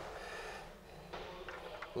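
Faint clicks and rattles of hands working the riving knife release lever inside a SawStop table saw's throat opening, with the saw unplugged and no motor running.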